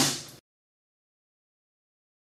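The last word of a man's speech, cut off abruptly less than half a second in, followed by dead digital silence.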